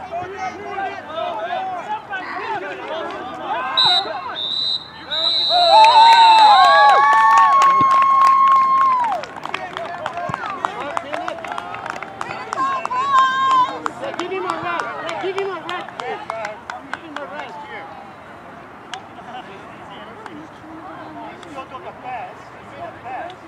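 A referee's whistle, one short blast and then a longer one about four seconds in, followed by a loud, drawn-out shout and excited shouting from players on the field, with scattered claps and smacks; the voices then settle to quieter talk.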